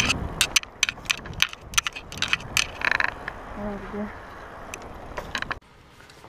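A bicycle rattling and clicking as it is ridden over a paved path, with irregular sharp clicks throughout. The sound cuts off suddenly shortly before the end.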